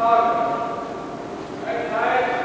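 A man's drawn-out shouted drill call, sudden and loud at the start and fading over about a second and a half, echoing in a large hall; another begins near the end, about two seconds after the first.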